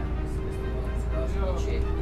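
Steady low rumble of a city bus's engine and road noise, heard from inside the moving bus, with voices and a background music bed over it.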